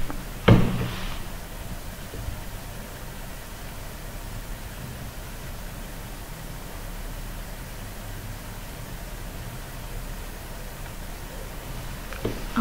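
Low steady background hum with faint noise, broken by one sharp click about half a second in.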